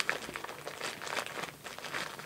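A small sealed mailer package crinkling and rustling as it is worked open by hand, with irregular crackly ticks.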